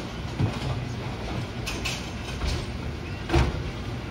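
Brunswick A-2 pinsetter running through its respot cycle, a steady mechanical rumble with a few clunks and one loud thump near the end as the deck lowers and sets the two standing pins back on the lane.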